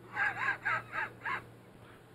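High-pitched laughter: five quick bursts of "ha" over about a second.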